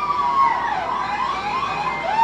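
A siren-like wail, its pitch sweeping up and down in quick repeated arcs.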